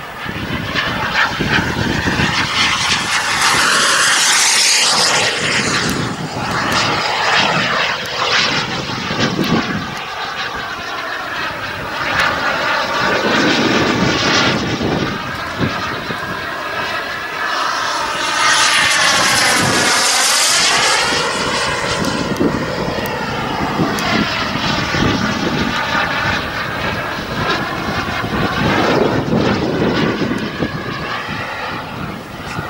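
Kingtech K140 turbine of an RC F1 Fortune jet running continuously in flight: a rushing roar with a high turbine whine. It swells twice as the jet makes low passes, a few seconds in and again around two-thirds of the way through, with a swirling, phasing sweep and a drop in pitch as it goes by.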